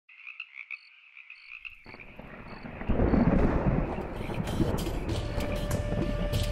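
A faint chorus of rapid, pulsing animal calls, like a night-time frog chorus, then a deep rumble swelling in about two seconds in and loud from three seconds on. A steady held tone enters near the end as the intro music begins.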